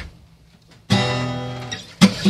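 Acoustic guitar strummed once about a second in, a single chord ringing and slowly fading, opening a song.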